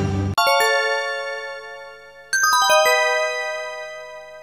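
Bell-like chimes playing two quick descending runs of struck notes, one just after the start and one about halfway through, each run ringing on and fading away.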